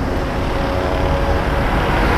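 Road traffic going by: a steady rush of engine and tyre noise from a passing motor vehicle, growing slightly louder.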